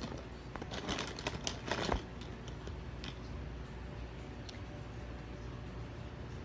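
Plastic marker pens clattering against each other as a hand stirs them in a bin, for about two seconds, then a few faint clicks.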